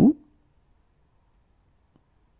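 The last syllable of a spoken French phrase dying away in the first moment, then near silence.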